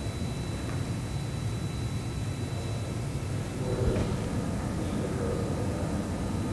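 Amplified directional boom-microphone audio: steady hiss and low rumble. About four seconds in and again near the end, a faint muffled sound rises out of the hiss, which the investigators take for an unexplained man's voice.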